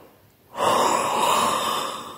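A man's loud, drawn-out breathy gasp of anguish, starting about half a second in and lasting about a second and a half before fading.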